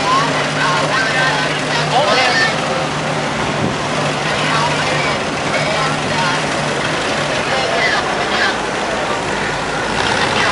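Vintage cars passing slowly one after another, their engines running at low speed with a steady low hum that fades about seven seconds in.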